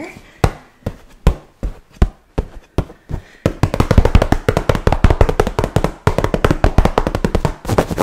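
Wooden massage tools tapping and clicking: scattered sharp taps at first, then from about three and a half seconds a fast, dense run of taps with a brief break near the end.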